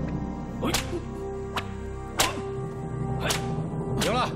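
A whip cracking four times at uneven intervals as it lashes a person, each crack sharp and sudden, over a steady film score.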